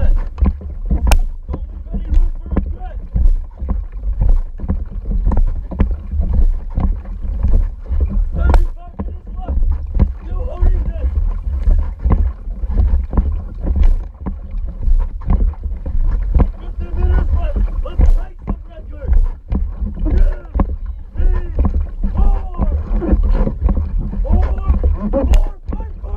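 Outrigger canoe being paddled at a steady pace: paddle strokes splashing and catching the water about once a second, over a heavy low wind-and-water rumble on the camera microphone.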